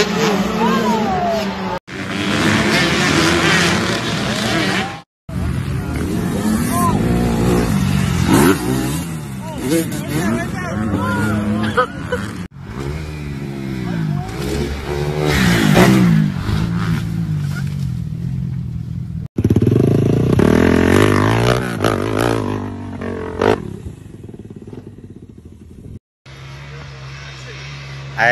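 A run of short clips of dirt bike engines revving and running, rising and falling in pitch, mixed with people's voices and shouts. The sound breaks off sharply between clips every few seconds.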